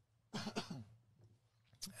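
A man briefly clearing his throat close to the commentary microphone, once, about a third of a second in; the rest is faint.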